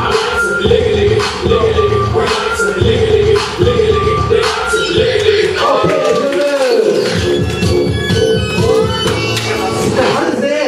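Loud hip-hop dance music played over speakers, with a steady beat; the bass drops out for about a second past the middle.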